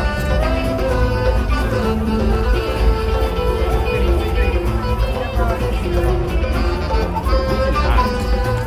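Music with plucked guitar-like strings and a strong, steady low end, running without a break.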